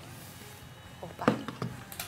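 Quiet room tone, broken a little over a second in by a short spoken utterance or vocal exclamation.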